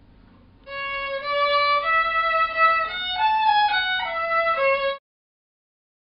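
Solo violin, bowed, playing a short melody of about ten notes that starts a little under a second in. The sound cuts off abruptly near the end.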